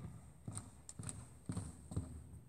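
Footsteps in sneakers on a hardwood gym floor, a person walking at about two steps a second.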